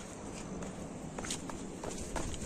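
Footsteps on a gravelly red dirt path: a few irregular crunching steps over a low outdoor background.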